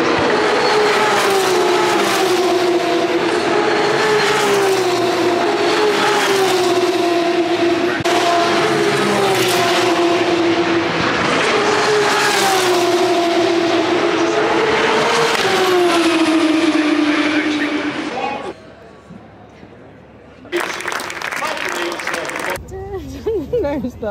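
Single-seater racing car engines at high revs on the circuit, their pitch repeatedly rising and then dropping as they accelerate and change gear, for about eighteen seconds. Then the sound cuts to a much quieter background, with a short burst of noise shortly before the end.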